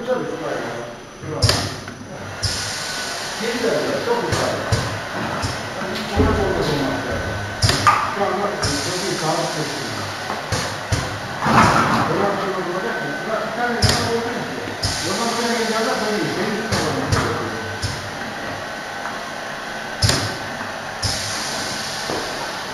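Pneumatic filling machine running, with repeated bursts of air hissing from its valves and cylinders, some brief and some lasting a second or two, under people talking and a laugh.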